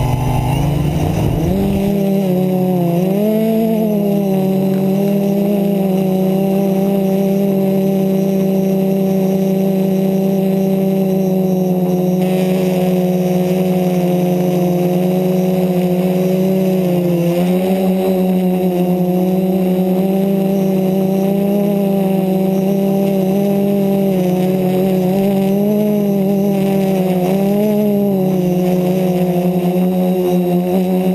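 DJI Flamewheel F330 quadcopter's four electric motors and propellers, heard up close from the camera mounted on the craft. They give a loud, steady hum that rises in pitch over the first two seconds as the motors spin up for takeoff. The hum then holds while the craft hovers, wavering in pitch now and then.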